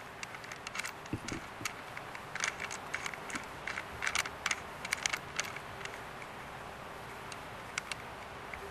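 Small metal nuts being finger-tightened onto the center bolt of a bicycle seat's steel clamshell clamp, giving light scattered metallic clicks and ticks as the nuts turn and the ridged clamp pieces shift on the saddle rails. The clicks come in the first five or six seconds, with one dull knock about a second in.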